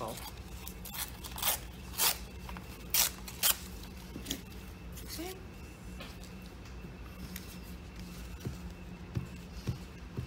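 Scrap paper being torn and handled: several sharp crackles in the first few seconds, then quieter rustling, with a few soft taps near the end as pieces are pressed onto the page.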